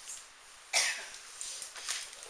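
A person coughing once, sharply, about a second in, followed by a couple of fainter short sounds.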